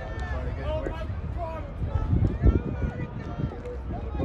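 Indistinct voices of people talking, the words not clear, over a steady low rumble, with a loud low knock about two and a half seconds in.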